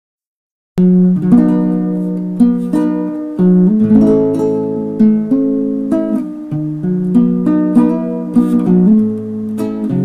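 Acoustic guitar playing a run of plucked notes and chords, starting about a second in after silence.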